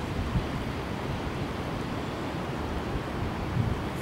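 Wind buffeting the camera microphone: a steady low rumbling noise with no distinct events.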